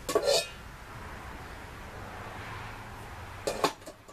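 A metal smoke-generator canister being shifted on a concrete floor, knocking and clinking, with a quick cluster of sharp clanks about three and a half seconds in.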